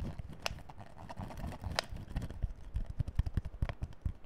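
Clear plastic bottle handled and squeezed close to the microphone: thin plastic crackling with irregular taps and clicks. There are two sharper clicks in the first two seconds, and quicker low thuds in the second half.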